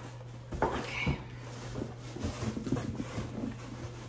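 Cardboard shipping box being handled and its flaps pulled open: a sharp scrape a little over half a second in, then a run of small irregular crackles and taps.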